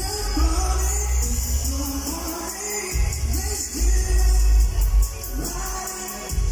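Live pop performance: a male singer's amplified voice sung over a backing track with heavy bass, heard through arena sound reinforcement.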